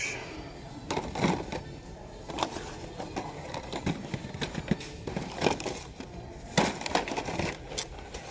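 Plastic blister-card toy car packages being handled and shuffled, with repeated crinkling and clacking of plastic and cardboard; the loudest clacks come a little past the middle.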